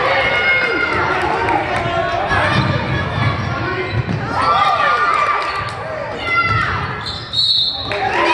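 A basketball dribbled on a hardwood gym floor, with sneakers squeaking and people shouting, echoing in a large gym.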